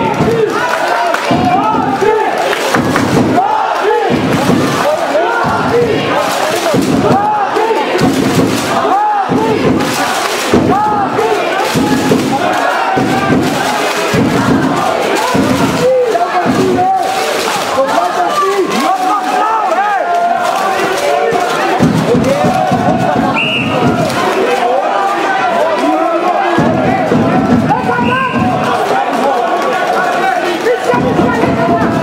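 A crowd of spectators in an arena, shouting and yelling with many voices overlapping the whole time, as they react to a wrestling bout on the mat.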